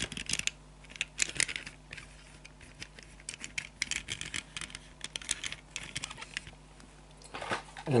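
Small clicks, taps and scrapes of a 1/64 diecast model car being handled and turned on a tabletop by fingers, coming in scattered clusters.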